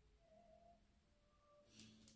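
Near silence: room tone, with a faint brief rustle near the end.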